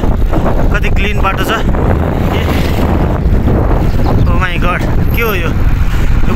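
Wind buffeting the microphone of a camera on a moving bicycle, a loud, steady low rumble, with brief bits of a voice about a second in and again near the end.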